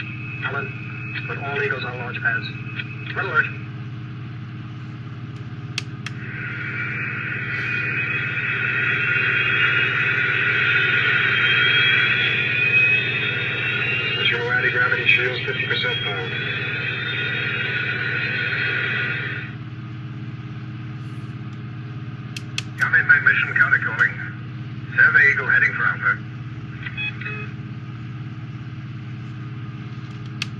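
A toy launch pad's small built-in speaker playing sound effects: a few seconds of tinny dialogue, then a spaceship engine sound lasting about thirteen seconds with a faint rising whine, then more short snatches of dialogue. A steady low hum runs underneath.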